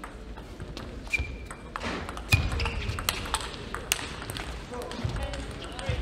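Table tennis rally: the ball clicks sharply off bats and table, and shoes squeak on the court floor. A loud hit comes a little over two seconds in, followed by voices and crowd noise as the point ends.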